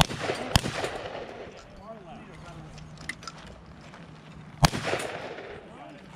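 Three loud gunshots: two about half a second apart at the start and a third about four and a half seconds in, each followed by a short echo.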